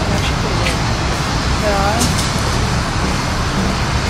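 Steady road-traffic noise with a brief voice a little under two seconds in.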